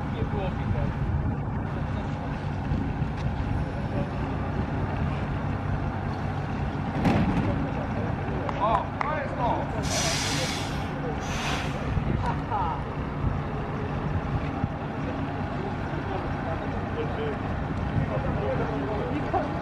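Ikarus 280.02 articulated bus's six-cylinder diesel running steadily as the bus pulls slowly past and turns. There are two short hisses of compressed air about ten seconds in and again a second and a half later, typical of the air brakes.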